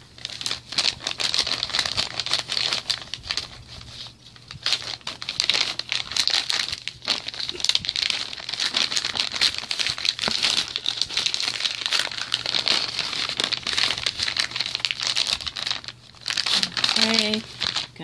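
Plastic crinkling and crackling as the thin plastic sleeve of an MRE flameless ration heater is handled and opened to take the foil entrée pouch, going on almost without a break with a few short lulls.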